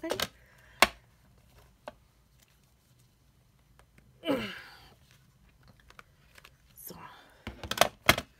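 Hand-squeezed hole-punch pliers snapping through thick card: one sharp click a little under a second in, then a fainter click. A brief falling vocal sound comes a little after four seconds, and the card rustles and clicks as it is handled near the end.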